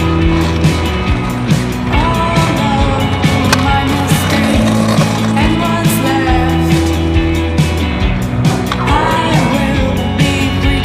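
Music with a bass line and drums, over a trick scooter's wheels rolling on asphalt.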